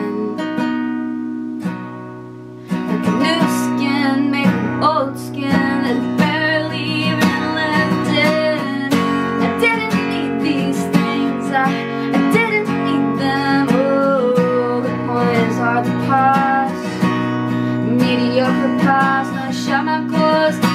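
Steel-string acoustic guitar with a capo, a chord left ringing and fading for the first couple of seconds, then strummed again, with a woman singing over it.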